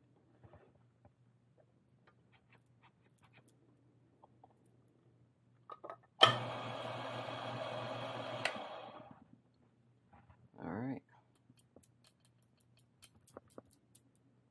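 Niche Zero burr grinder motor starting abruptly about six seconds in, running for about two and a half seconds and winding down, with grounds dropping into the dosing cup. A short voice-like sound follows, then light clicks and taps of the portafilter and dosing cup.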